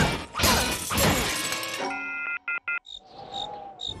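Cartoon sound effects: a loud crashing smash for about two seconds, then a brief stuttering electronic tone, then a few faint cricket chirps near the end, the comic sign that nothing happened.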